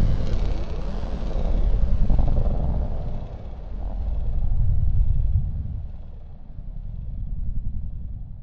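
Deep rumbling noise in an experimental ambient electronic piece, swelling and ebbing in slow waves every two to three seconds and growing fainter toward the end.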